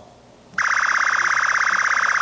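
Quiz-show answer buzzer sounding a loud, steady electronic buzz with a fast, even pulse, starting about half a second in. It signals that a team has buzzed in to answer.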